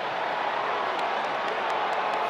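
Steady stadium crowd noise after a touchdown, with a few faint claps or clicks in the second half.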